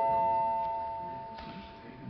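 A chime of rising ringing tones: the highest note sounds at the start over the lower ones and fades away over about two seconds.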